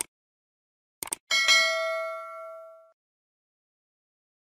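Subscribe-button sound effects: short clicks at the start and a quick double click about a second in, then a bright notification-bell ding that rings with several tones and fades over about a second and a half.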